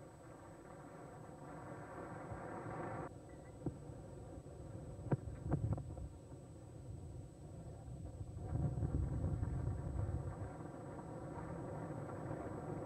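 Crowd murmur at a cricket ground heard through an old television broadcast, with a steady hum in the first three seconds. Two sharp knocks come about five seconds in as the ball is played off the bat, and the crowd noise swells a few seconds later as the run is taken.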